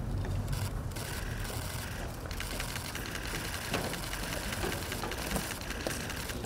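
Camera shutters clicking in rapid bursts, dense and overlapping from about two seconds in, over a low steady rumble.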